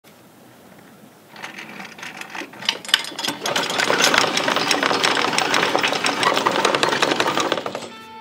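A fast, dense rattling clatter that comes in about a second in, builds over the next few seconds and cuts off suddenly at the end.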